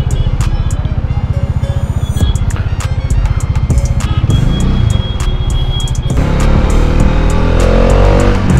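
Background music with a steady beat over a Kawasaki Z900's inline-four engine, first idling in slow traffic, then louder with a rising pitch as the bike accelerates near the end.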